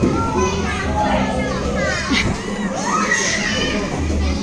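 Children playing, with many young voices calling out and chattering over one another at a steady level.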